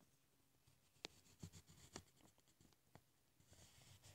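Faint pencil strokes scratching on paper as short lines are drawn, clustered between about one and three seconds in.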